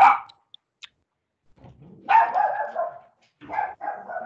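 Dog barking: a sharp bark at the start, then a longer one about two seconds in.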